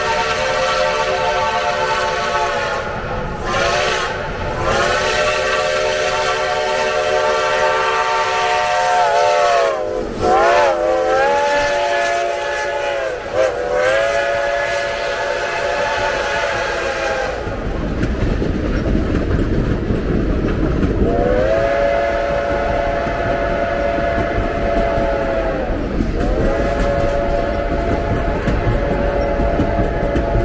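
Reading & Northern T-1 No. 2102's steam whistle blowing for the grade crossing: long blasts with a few short toots between, several notes sounding together as a chord. After about 17 seconds the heavy low rumble of the train rolling past takes over, with two more long blasts over it.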